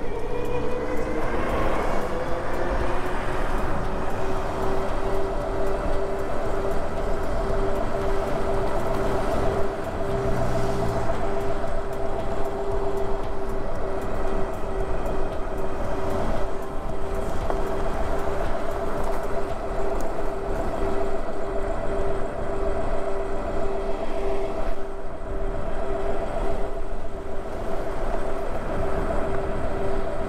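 Super73 S2 e-bike's hub motor whining as it picks up speed, rising in pitch over the first couple of seconds and then holding steady at cruising speed, with wind noise rushing over the microphone.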